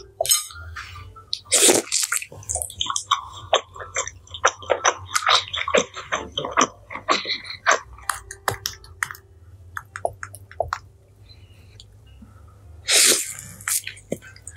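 Wet, sticky squishing and dripping as a sausage is dipped and swirled in a small glass bowl of thick cheese sauce: a quick run of short clicks and squelches. A louder bite comes near the end.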